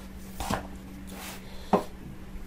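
Two light knocks of hard plastic as a new GoPro Hero 11 in its plastic packaging is handled and lifted out of its carrying case, the second knock louder, over a low steady hum.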